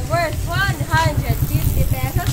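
A high-pitched voice in short sing-song syllables, each rising and falling in pitch, over a low, fast-pulsing rumble.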